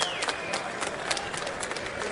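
Arena fight crowd noise, a steady hubbub with many sharp, irregular clicks and slaps through it. A high whistle slides down and stops just after the start.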